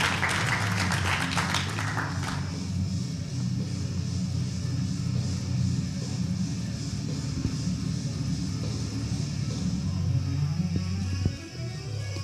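Applause and clapping from a small crowd dying away over the first two seconds or so, with background music and a steady low bass running under it throughout.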